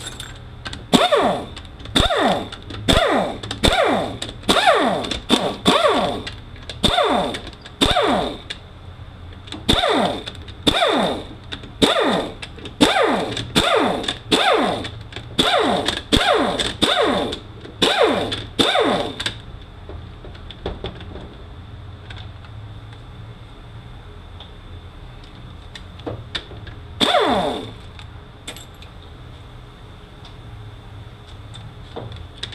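Hand ratchet run back and forth on the valve-body bolts of a 5R55E transmission, backing them out: a quick, even string of ratcheting strokes, about one and a half a second, each a rattle of clicks that falls in pitch. The ratcheting stops about two-thirds of the way through, with one more stroke near the end.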